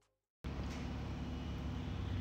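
A short silence, then a steady low background hum with faint sustained tones, typical of the room tone of a garage shop.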